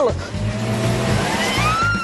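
A woman's high scream that climbs steadily in pitch and then holds high near the end, over a vehicle engine running.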